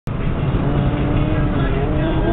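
A husky-type dog howling along inside a moving car: one long drawn-out howl that falls slightly in pitch, and a second starting to rise near the end, over the steady rumble of road noise in the cabin.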